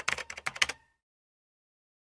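Typing sound effect: a rapid run of keyboard-like clicks that goes with on-screen text being typed out, stopping a little under a second in.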